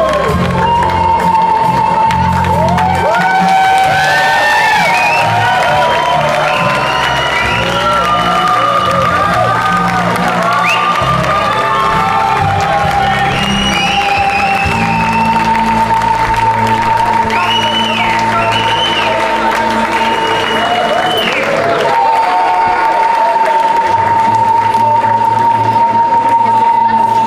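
Music with long held notes and a low bass line, playing over a concert crowd cheering and applauding as the band makes its way to the stage.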